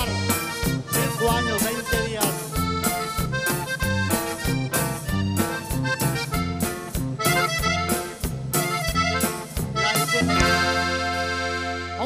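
Live norteño band playing an instrumental passage led by a button accordion, with bass and drums keeping an even beat. About ten seconds in the band ends the song on one long held chord.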